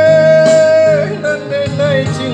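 A Minang song played on an electronic arranger keyboard with a man singing along; one long note is held through the first second, then a shorter melodic phrase follows over the steady keyboard accompaniment.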